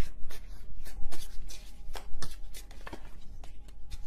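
Tarot cards being handled and laid down on a table: an irregular run of short, sharp snaps and taps, about three or four a second.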